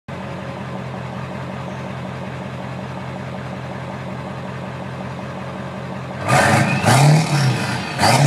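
Ford 7.3 Powerstroke turbodiesel V8 idling steadily through a straight-piped 5-inch exhaust and stack, with no cat and no muffler. About six seconds in it is revved hard, and the pitch rises and falls.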